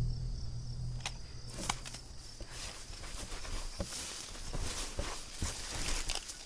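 Horror-film soundtrack of a night scene outdoors: a steady high chirring of crickets, with scattered soft rustles and clicks. A low drone fades out over the first two seconds.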